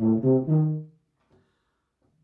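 Tuba playing the last quick notes of a scale run, ending on a held note that stops about a second in, followed by near silence.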